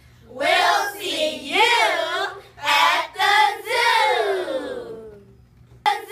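A group of children's voices calling out together in unison in a few long, sing-song phrases, with a sharp click near the end.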